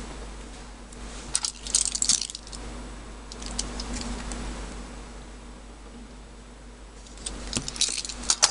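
Plastic YJ ChiLong 3x3 speedcube, freshly lubricated and tensioned, being handled and its layers turned: a quick cluster of plastic clicks about a second and a half in, a quieter stretch, then more clicking near the end.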